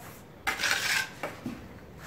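Metal plastering trowel scraping with a faint metallic ring about half a second in, lasting about half a second, followed by two soft taps as mortar is worked onto the ceiling.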